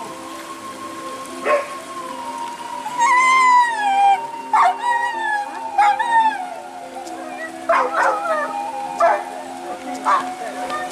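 Hunting dogs giving several short sharp barks and yelps, with one long howl that falls in pitch about three seconds in, the loudest call.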